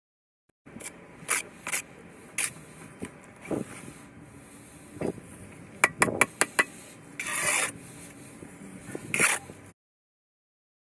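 Bricklaying trowel work: a steel trowel scraping mortar and tapping bricks into place, with short sharp taps, a quick run of them about six seconds in, and a longer scrape a little after seven seconds.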